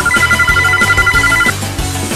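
Smartphone ringing for an incoming call: a rapid, trilling electronic ringtone that stops about a second and a half in, over background music.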